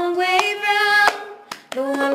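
Two girls singing a melody together, with sharp claps and a cup tapped on the floor keeping the beat, as in a cup-song routine.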